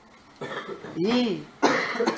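A man clearing his throat and coughing: a soft rasp, a short voiced sound about a second in, then a sharp cough near the end.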